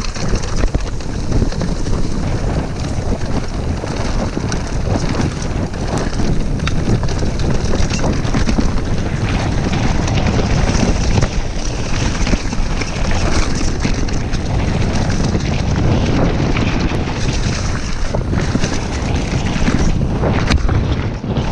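Wind buffeting an action camera's microphone at riding speed, over the steady rumble of mountain bike tyres rolling on a dirt trail covered in dry leaves. Small clicks and rattles from the bike run through it.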